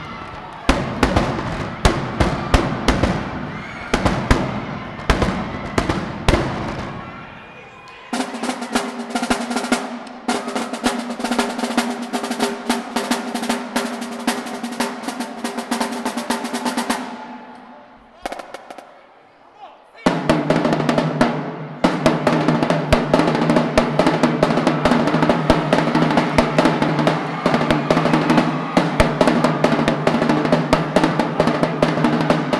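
A marching drumline of snare drums, tenor drums, bass drums and cymbals playing fast cadences, the strokes ringing in a gymnasium. The drumming stops suddenly about 17 seconds in, and after a short pause a new fast cadence starts about 20 seconds in.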